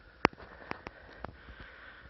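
A pair of horses trotting in harness on a snow-packed road. Irregular sharp clicks and knocks sound over a steady hiss, the loudest a sharp crack about a quarter second in.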